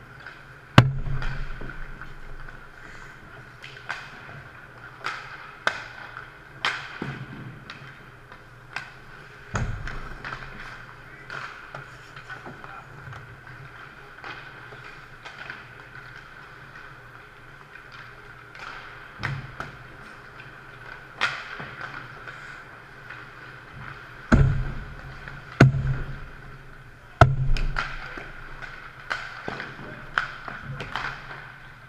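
Ice hockey warm-up shots: sharp knocks of sticks striking pucks and pucks hitting the goalie, the net and the boards, a dozen or more scattered through, with the loudest about a second in and three heavy thuds near the end, over a steady hum.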